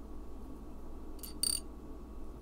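Two quick, light clinks of small beads knocking together, the second louder and ringing briefly, about a second and a half in, over a faint steady room hum.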